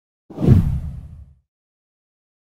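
A single whoosh sound effect with a heavy low end, rising sharply a moment in and fading out over about a second.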